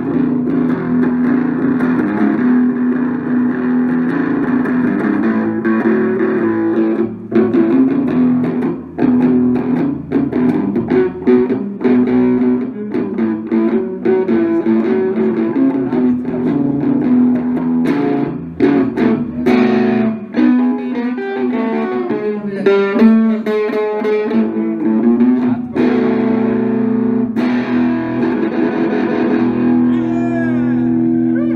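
Electric guitar (a Les Paul-style single-cut) played through an amplifier, with sustained chords and single-note lines. A fast run of quickly picked notes comes about two-thirds of the way in.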